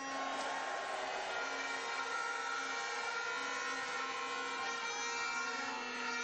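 Auditorium crowd cheering in a steady wash of noise, with many held horn-like tones sounding over it, answering the speaker's greeting call.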